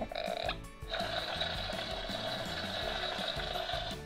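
Disney Frozen 2 Walk and Glow Bruni plush playing its electronic fire spirit sound effects after its try-me button is pressed: a short sound, a brief break, then a longer steady sound from about a second in, over background music.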